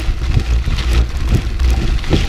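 Wind rumbling on a GoPro action camera's microphone over the noise of a cross-country mountain bike's tyres on a dirt fire road, with many short crackles and rattles from gravel and the bike.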